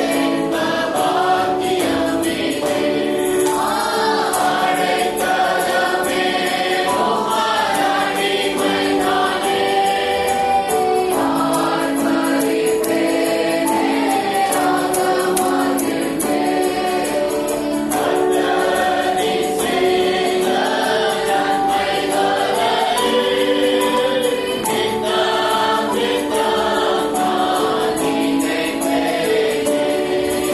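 Choir singing gospel or Christian music with instrumental accompaniment.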